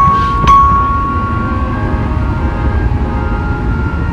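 Air-driven band organ playing. A glockenspiel bar is struck about half a second in and rings on, fading slowly, over faint held tones and a steady low rumble.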